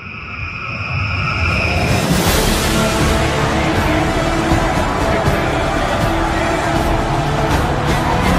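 Background music: a held synth swell that opens, about two seconds in, into a loud, dense track with a steady beat.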